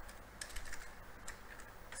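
Computer keyboard being typed on: a few faint, irregularly spaced keystrokes as a short line of code is typed and corrected.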